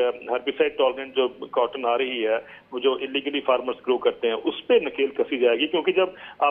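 Speech only: a man talking steadily over a telephone line, his voice narrow and thin.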